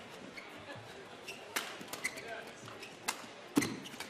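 Badminton rally: rackets striking a shuttlecock in a few sharp cracks, the loudest about three and a half seconds in, over the hum of a sports hall.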